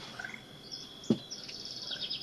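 Faint, high bird chirps, ending in a quick run of short chirps, with a single sharp knock about a second in.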